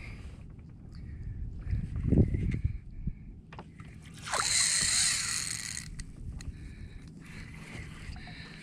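Spotted mackerel being wound in on a spinning reel from a kayak, with rod, reel and hull handling noises. A low bump comes about two seconds in, and a hissing rush lasts about a second and a half from just past four seconds.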